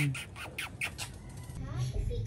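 A quick run of kisses planted on a baby's head: five or six short, sharp smacks in the first second.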